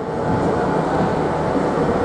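Steady hum and rumble of a stationary Southern Class 377 electric multiple unit's onboard equipment, with a faint steady tone.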